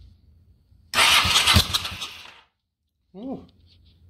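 A 1984 Honda Shadow 700's V-twin is turned over on its starter for about a second and a half, cutting off suddenly. The front spark plug is out of its cylinder and grounded on the frame to check for spark.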